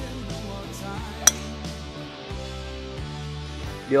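Background music with steady sustained notes, broken once about a second in by a single sharp click.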